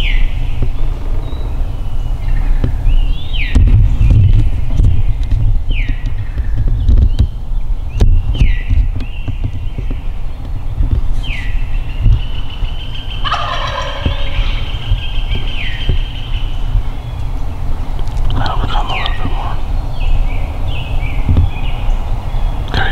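A wild turkey tom gobbling, most clearly about halfway through, while songbirds give short falling whistles every second or two. A low rumble runs underneath.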